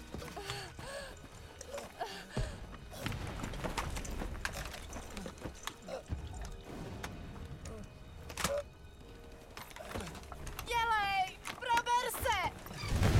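A wounded man's pained gasps and groans, broken by a few dull thuds over a low rumble, with a strained, wavering cry shortly before the end.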